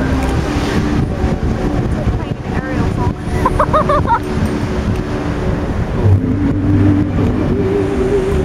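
Bellagio fountain show: music playing over the show's loudspeakers, with the rush of the water jets and background crowd chatter. A brief wavering voice rises above the mix about halfway through.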